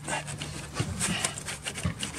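Rubbing, scraping and small irregular clicks of a stubborn plastic electrical connector being worked loose by a gloved hand, over a low steady hum.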